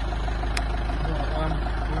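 A van's engine idling steadily, just after being jump-started. A brief faint click comes about half a second in.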